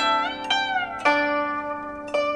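Solo Chinese zither: three plucked notes about half a second apart, the first sliding up in pitch as it rings and the second sliding back down.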